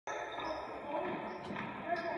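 Basketball game sounds in a gym: a ball bouncing on the hardwood floor a few times, with voices of players and spectators echoing around the hall.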